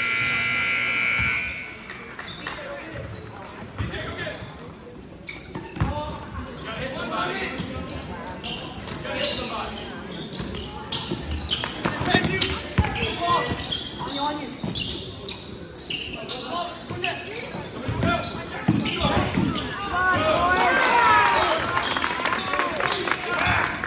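Indoor youth basketball game: a scoreboard buzzer sounds for about a second and a half at the start, then a basketball bounces on the hardwood floor amid players' and spectators' voices echoing in the gym. Sneakers squeak on the court near the end.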